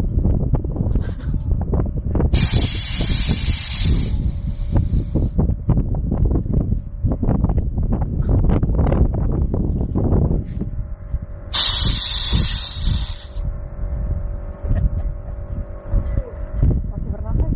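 Two bursts of compressed air hissing from a hose, each lasting about one and a half to two seconds, about two seconds in and again about twelve seconds in. Wind buffets the microphone throughout.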